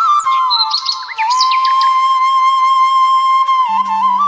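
Background music: a flute melody with a long held note through the middle, mixed with short bird chirps. A low drone comes in near the end.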